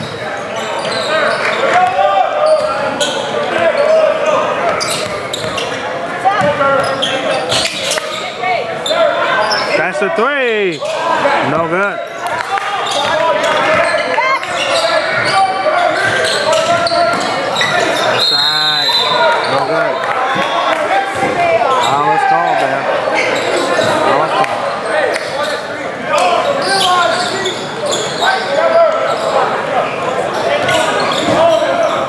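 A basketball bouncing on a hardwood gym floor during play, with sneakers squeaking and players' and spectators' voices echoing through the large gym.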